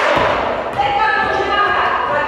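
Several high girls' voices calling out and cheering, echoing around a large sports hall. A ball thuds on the floor once or twice.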